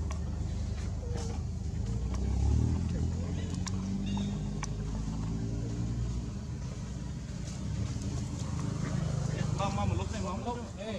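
Low, steady rumble of a motor running nearby, under faint background voices, with a couple of short clicks in the middle.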